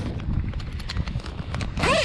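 Tent fabric rubbing and bumping against the camera microphone as the camera passes through a tent doorway: irregular rustling with low thumps and knocks.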